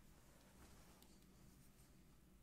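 Near silence: faint room hiss with a few faint light clicks.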